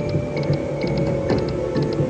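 Aristocrat video slot machine on a bonus cash spin: clusters of quick clicking ticks as the reels spin and stop, over the game's steady music.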